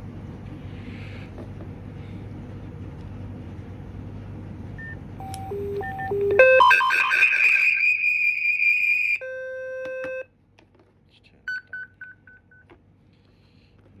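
Motorola and Sepura TETRA handsets sounding their emergency-alarm tones after an emergency activation. First a steady hum and hiss, then a few short beeps about five seconds in, then a loud, high warbling alarm tone for about two and a half seconds. A lower steady tone follows for about a second, and a few quick short beeps come near the end.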